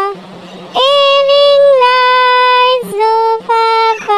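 A high, child-like voice singing a nursery-rhyme melody. About a second in it holds one long note for some two seconds, then sings a few short notes.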